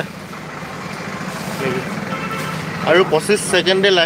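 Steady background noise with a low hum. A man starts speaking about three seconds in.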